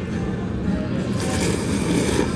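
Ramen noodles being slurped: a breathy sucking hiss starting about a second in, over restaurant background music.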